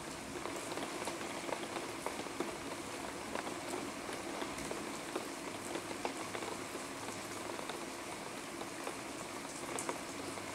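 Thunderstorm rain falling steadily: a constant hiss dotted with many small ticks of individual drops, with no thunder.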